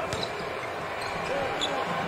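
Basketball being dribbled on a hardwood court, over steady arena ambience, with a faint voice calling out about one and a half seconds in.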